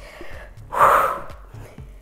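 A woman's single forceful breath, about a second in, under the effort of a sit-up core exercise.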